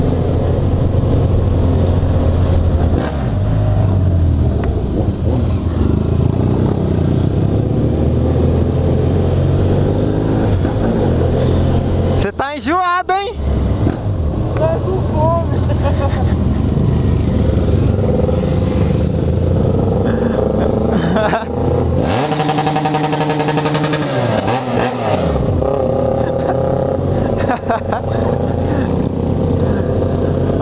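BMW F800GS Adventure's parallel-twin engine running through an open exhaust pipe with no silencer, ridden at low speed with the throttle opening and closing; its note falls clearly a little past the middle. Other motorcycles run close by.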